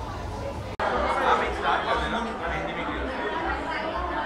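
Overlapping chatter of many voices with no clear words. It breaks off sharply for an instant just under a second in, and a louder burst of crowd chatter follows.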